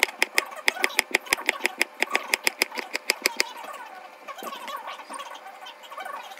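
Chef's knife chopping cucumber on a cutting board: quick, even blade strikes on the board, about five a second, which stop a little past halfway.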